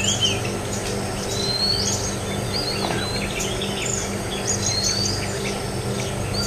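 Several small birds chirping and whistling: quick high chirps and a few longer rising whistles, over a steady low hum.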